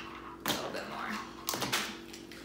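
Ice cubes clattering into a plastic blender cup: two sharp clatters about a second apart.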